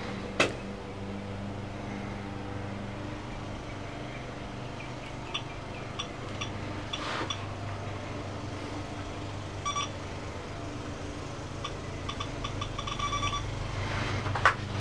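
A series of short electronic beeps in several clusters, the longest run near the end, over a steady low hum, with a sharp click right at the start.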